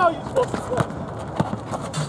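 Basketball pickup game on an outdoor asphalt court: a handful of sharp knocks from the ball bouncing and players' feet on the blacktop, with scattered shouting voices.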